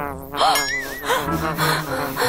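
Cartoon sound effects: a wavering, buzzing high tone early on, followed by a hiss.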